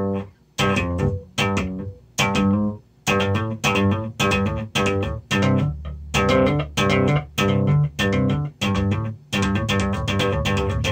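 Electric bass played slap style in a pop-slap-hammer pattern: popped notes, thumb-slapped notes and left-hand hammer-ons. They come in a choppy, syncopated riff, with short breaks between phrases.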